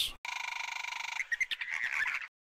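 A dinosaur-call sound effect for Dilophosaurus: a high, buzzing rattle for about a second, then a second of broken, stuttering calls.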